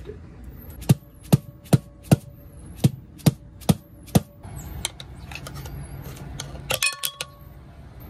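Mallet blows on a long steel drift set through a trailer brake drum's hub, driving out the inner axle seal and wheel bearing from behind: eight sharp strikes in two runs of four, about two or three a second, with the drum ringing faintly after them. Near the end, a short metallic clatter with a ringing note.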